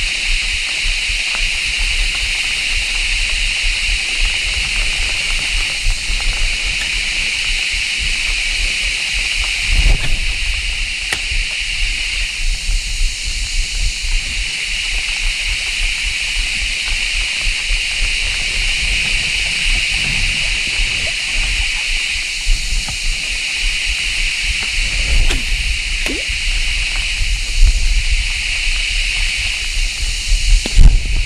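Steady, high insect chorus that slowly swells and fades, over the rush of a shallow, fast-flowing river. A few light knocks come in, about ten seconds in and again near the end.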